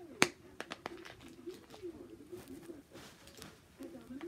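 Pink plastic blind-ball capsule being handled: one sharp plastic snap about a quarter second in, then a run of lighter clicks.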